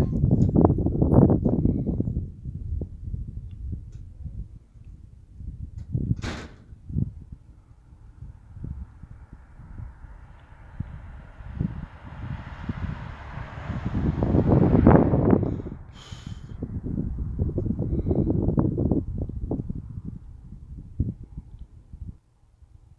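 A car passing on the road, its tyre hiss swelling to a peak in the middle and then fading away. Low rumbling buffets on the microphone come and go, with a couple of sharp clicks.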